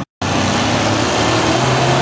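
After a brief dropout, a military truck's engine runs steadily under load as the truck pushes through a mud hole, its pitch rising slightly near the end.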